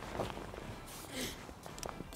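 Faint rustles and light clicks of an angler handling tackle and bait, with a short soft hiss about a second in.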